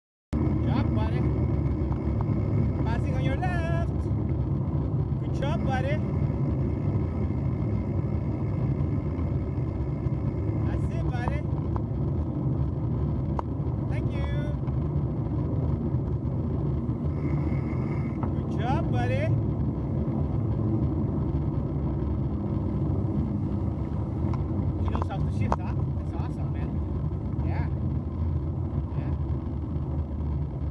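Steady rumble of wind buffeting the microphone and bicycle tyres rolling over a gravel trail during a ride.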